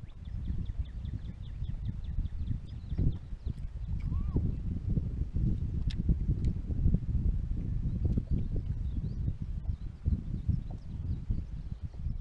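Wind buffeting the microphone: an irregular, gusty low rumble. Faint rapid ticking, about six ticks a second, is heard for the first few seconds.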